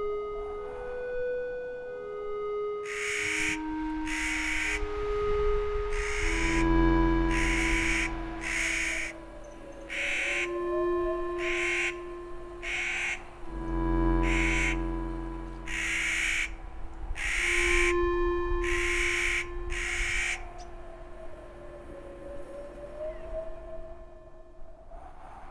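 Clark's nutcracker giving a long series of harsh, grating calls, roughly one a second, from about three seconds in until a few seconds before the end, over slow ambient music of held notes and a low drone.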